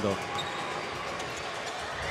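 A basketball being dribbled on a hardwood court, over the steady background noise of a large indoor arena.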